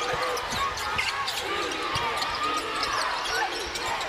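Basketball arena sound during live play: a steady murmur of crowd voices, with the ball bouncing and short knocks and squeaks from the court.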